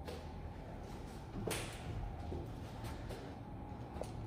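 A brief swish about a second and a half in, with a few faint light knocks, from the handheld phone being moved and rubbed as it pans around the room.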